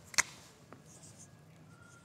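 A sharp click as the cap comes off a whiteboard marker, then the faint scratch of the marker starting to write on the whiteboard.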